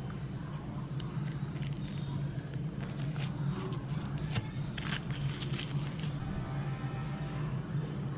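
A metal serving spoon breaking through the flaky lattice crust of a peach cobbler in a cast iron skillet: a run of short crisp crackles and scrapes for several seconds, over a steady low hum.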